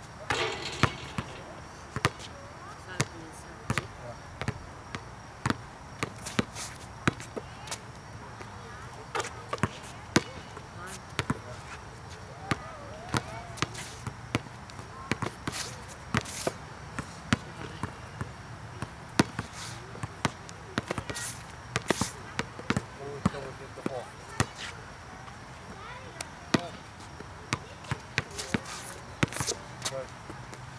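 Basketball dribbled on an outdoor hard court: sharp bounces coming in quick, uneven runs.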